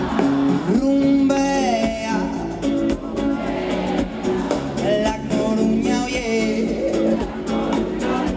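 Live band music with acoustic guitar and keyboards, with sung melodic lines over it.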